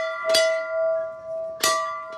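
Large hanging temple bell rung by hand: struck about a third of a second in and again near the end, each clang ringing on with a long, steady tone.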